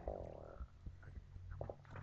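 A few faint, scattered computer key clicks over a steady low hum.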